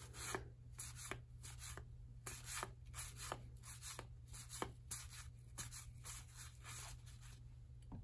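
1984 Donruss cardboard baseball cards being slid off a stack and flicked one by one by hand: about a dozen faint, short papery flicks and swishes at an irregular pace.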